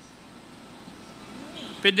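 Low, steady background hiss of a hearing-room microphone feed, then a man starts speaking near the end.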